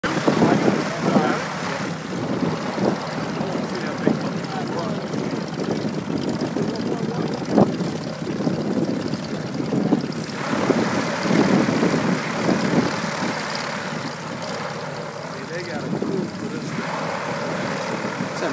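The Goodyear blimp's propeller engines running on the ground, mixed with the voices of people standing nearby.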